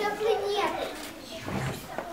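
Young children's voices in a group, talking softly, quieter in the second half.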